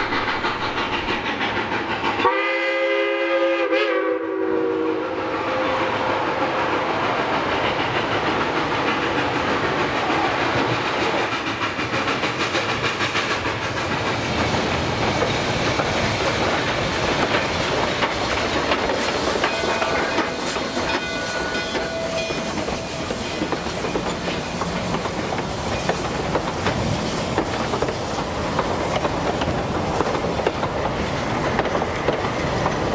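Narrow-gauge coal-fired steam locomotive blowing its whistle, a chord of several tones lasting about two seconds, starting about two seconds in. It then works past hauling its coaches, with a steady running noise from the engine and the wheels on the rails.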